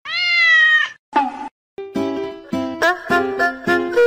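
A domestic cat meowing once, a long call of about a second that rises then dips slightly in pitch; a short sound follows. Music with a steady beat begins about halfway through.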